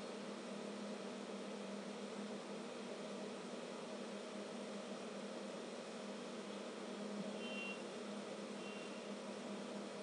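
Steady low hum with an even hiss: background room tone. No distinct sound of the gluing is heard.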